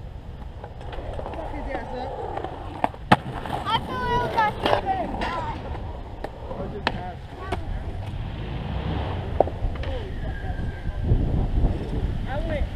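Skateboard wheels rolling on concrete, a low rumble that grows heavier near the end, with several sharp clacks of a board striking the concrete, the loudest about three seconds in.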